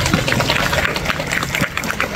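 Applause: a crowd of schoolchildren and teachers clapping their hands, a dense patter of many quick claps.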